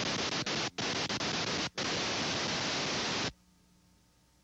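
Loud static hiss on the old videotape's sound track, breaking off for an instant a few times, then cutting off suddenly a little over three seconds in, leaving a faint hum.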